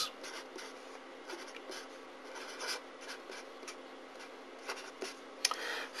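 Felt-tip marker writing on paper: a run of faint, short scratchy strokes over a low steady hum, with a single sharp click near the end.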